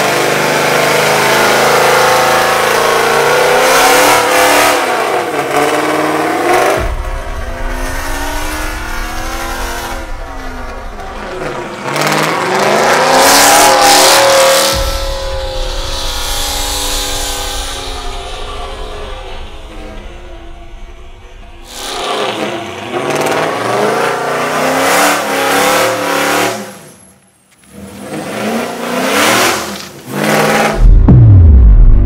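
A Dodge Charger R/T's 5.7-litre HEMI V8 with aftermarket exhaust revving hard during a burnout, spinning the rear tyres. The revs rise and fall several times and drop out briefly near the end.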